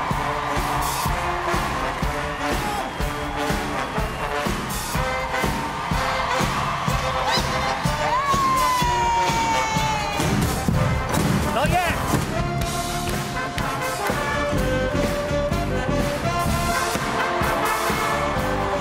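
A military-style brass band and corps of drums playing a march, with rapid drum strokes under the brass. About eight seconds in, a single high note slides slowly downward, and a short wavering slide follows near twelve seconds.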